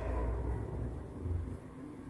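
Front-loading washing machine running, its drum motor giving a low, uneven rumble as the machine works up toward its fast spin.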